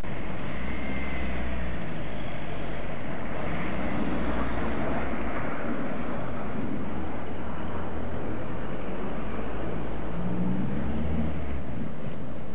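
Outdoor street ambience dominated by a loud, steady low rumble that swells at times, around a second in, from about three to six seconds, and again near the end.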